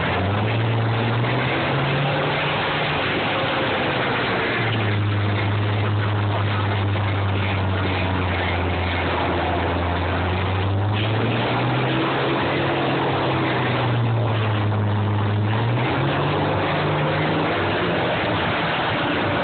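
Combine harvester engines running under load as two combines push against each other, the engine pitch rising and falling several times as they rev.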